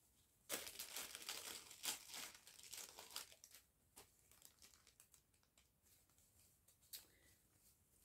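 Paper pattern sheets and the plastic bags of embroidery kits rustling and crinkling as they are handled and shuffled. The handling is busiest over the first three seconds, then dwindles to a few light scattered rustles.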